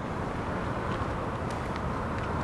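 Steady outdoor background hum of distant traffic, even and unbroken.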